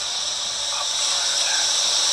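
Steady hiss of an ocean-surf soundscape, with a few faint gliding tones in it.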